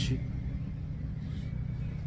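A steady low background rumble and hum with no distinct events.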